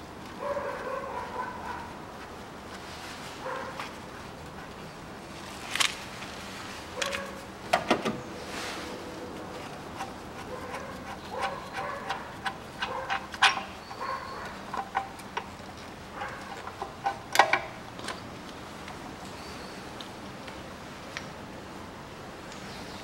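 Metal tool clinks and knocks as the timing-belt tensioner pulley is unbolted with a 14 mm socket and taken off the engine, with a handful of sharp clicks and several short squeaky sounds in between.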